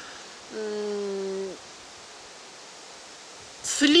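A woman's drawn-out hesitation sound, one held flat "aaa" lasting about a second, then a pause filled only by a steady outdoor hiss; her speech resumes near the end.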